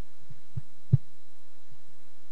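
A few dull, low thumps, the loudest about a second in, over a steady low hum.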